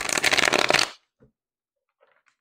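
A deck of oracle cards being shuffled: a quick run of rapid card clicks lasting about a second, followed by one faint tick.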